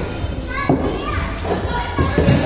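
Children's voices and chatter echoing in a large indoor play hall, over a steady low background hum.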